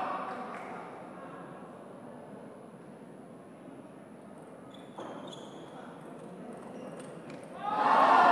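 A table tennis ball clicking off paddles and table in a short, quick rally: a sharp hit about five seconds in, then several lighter ticks, over the hush of a large hall. Crowd noise swells suddenly near the end as the rally ends.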